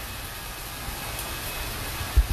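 Steady, even hiss of fish-hatchery background noise, running water and equipment, with no distinct events.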